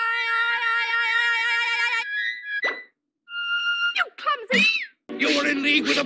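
A flute holds one shrill note for about two seconds, then breaks into short squeaky notes and a few quick rising-and-falling glides. About five seconds in, this gives way to speech over music.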